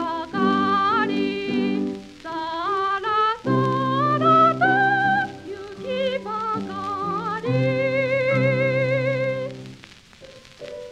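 Woman singing a Japanese children's song in a high voice with wide vibrato, accompanied by piano chords; the voice stops near the end, leaving the piano alone.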